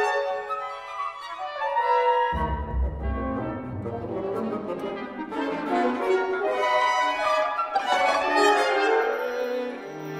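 Chamber orchestra playing classical music, with the brass to the fore. A deep bass part enters suddenly about two seconds in, under the dense upper lines.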